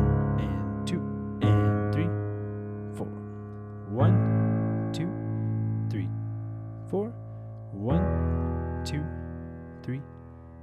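Korg SV1 stage piano playing the left-hand part only: low octaves and fifths struck and left to ring through a slow A–E–Bsus–C#m progression. Light ticks sound about once a second, marking the beat.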